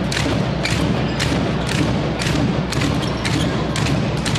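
Handball game in a sports hall: a run of irregular sharp thuds and knocks, a few a second, over steady crowd noise in the hall.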